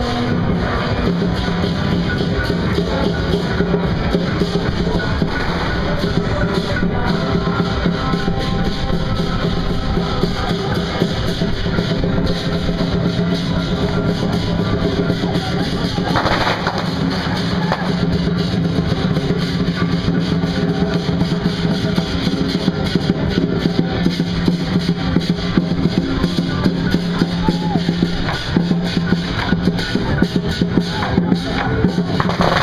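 Lion dance percussion: a large drum beaten in a fast, dense rhythm with other struck percussion. Underneath runs loud, continuous procession music with a held low tone.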